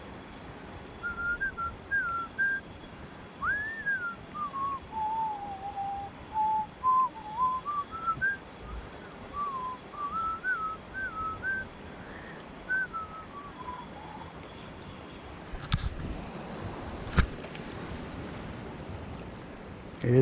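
A person whistling a slow, wandering tune, rising and falling in short notes for most of the stretch, over the steady rush of river water. Two sharp clicks come near the end.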